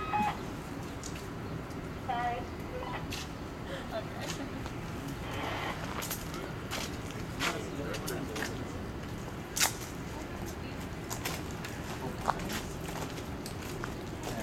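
Indistinct voices of people talking over steady background noise, with a handful of sharp clicks scattered through; the loudest click comes about two-thirds of the way in.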